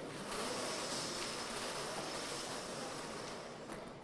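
Steady hiss-like background noise of a large hall, with a few faint clicks.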